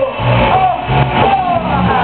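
Live rock band playing: electric guitars and bass under a lead voice singing a line that glides up and down in pitch.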